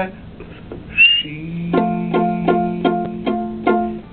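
A plucked string instrument playing a run of evenly spaced notes, about four a second, over a held low note, starting near the middle and stopping just before the end. A brief, high, rising squeak comes about a second in.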